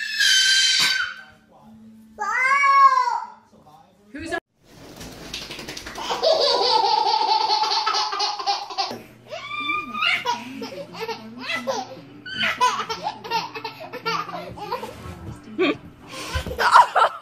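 Babies squealing and laughing, with people laughing along, in several short separate bursts.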